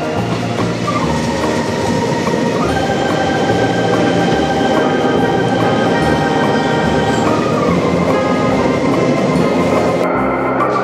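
JR Hokkaido 731 series electric multiple unit running into a station platform, its wheels and motors rumbling as the cars roll past, growing louder over the first few seconds and then holding. Background music plays over it.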